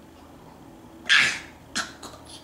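A baby coughing twice: a louder cough about a second in and a shorter one near the end.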